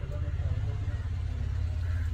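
A steady low rumble with faint talk over it.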